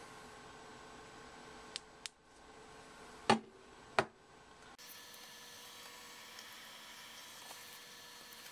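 Low room hiss and hum with four short clicks in the middle, two faint ones followed by two louder ones. Just after them the background hum changes abruptly to a different steady tone.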